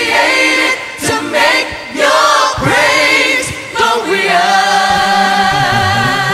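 Gospel choir singing with little accompaniment. About four seconds in it settles into a long held chord as a bass line comes in.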